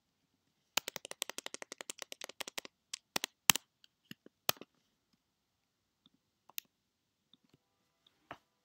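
Computer keyboard typing: a quick run of keystrokes lasting about two seconds, followed by a handful of separate, louder key presses, then a few faint single clicks.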